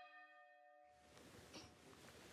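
A faint bell-like chime with several overlapping tones, dying away about a second in, leaving faint hiss.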